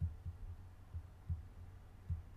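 Faint, muffled low thumps, about five at irregular spacing, over quiet room tone.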